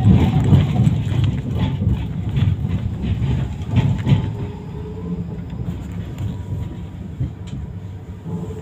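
Tram running on street rails, a low rumble with clattering clicks from the wheels over the track, loudest in the first few seconds. It then grows quieter and steadier as the tram slows toward a stop.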